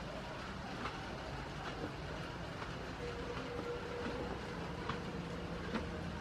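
Steady rain falling on the roof of a goat house: a constant rushing hiss with a few scattered sharp ticks.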